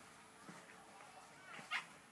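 A dog's single short yip about three-quarters of the way through, over a faint, quiet background.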